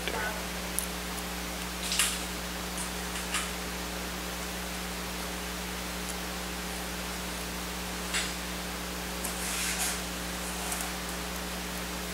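Steady hiss and mains hum, with a few faint short clicks and rustles of fingers handling a laptop circuit board and its fine ribbon cable: about two seconds in, near three seconds, around eight seconds and about ten seconds in.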